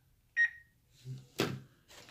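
A single short electronic beep, one clear high tone that fades over about half a second, from the wireless security camera setup. About a second and a half in there is a sharp click from handling the device.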